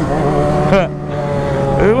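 Motorcycle engines running at a steady cruise, holding one even drone. A short shout cuts in about three quarters of a second in, and speech starts near the end.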